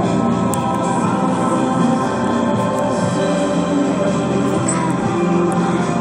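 Music playing at a steady level through a vintage Marantz 2250B stereo receiver.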